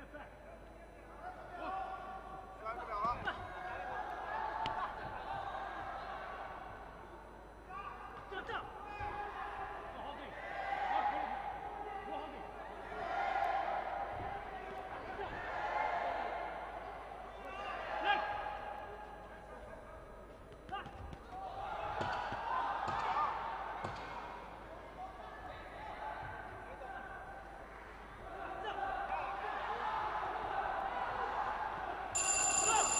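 Voices shouting drawn-out calls again and again around a boxing ring, over scattered sharp thuds of gloves and feet on the ring.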